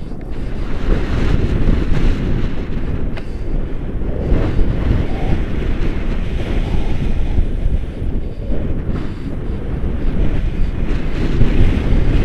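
Wind buffeting the camera microphone in paraglider flight: a loud, rushing rumble that surges and eases, growing louder near the end.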